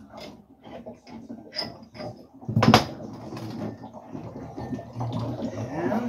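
Metal clicks and knocks of an element wrench being fitted to and worked on the lower heating element of an electric water heater, with one loud knock about two and a half seconds in, then a steadier scraping rustle.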